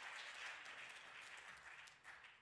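Faint applause from a church congregation, dying away.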